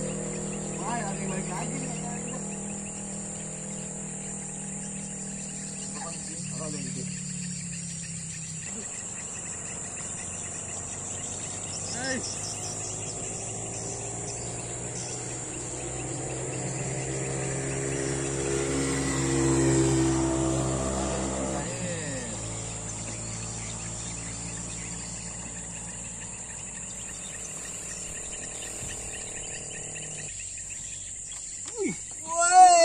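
Steady high-pitched drone of insects, with a low hum underneath. About two-thirds of the way in, a vehicle passes, growing louder to a peak and then falling away.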